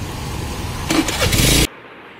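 Street traffic noise with a running vehicle engine, which cuts off abruptly about three-quarters of the way through.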